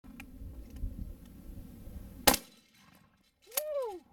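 A single shot from a 12-gauge pump-action shotgun, a sharp crack a little over two seconds in, over low wind rumble. Near the end comes a short pitched sound that rises and then falls.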